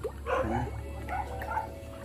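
An animal's short whining yelp a quarter second in, then a faint held whine, over a steady low hum.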